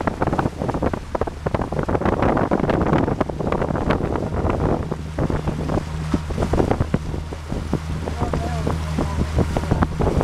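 Wind buffeting the microphone over open water, with choppy waves splashing irregularly. About halfway through, a steady low engine hum from a motorboat joins in underneath.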